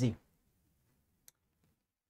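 The tail of a man's spoken word, then a pause in the speech with one faint, short click a little over a second in.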